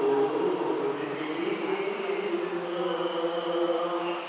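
An elderly man's voice chanting a devotional recitation from a book into a microphone. He holds long notes that waver slowly in pitch, without a break.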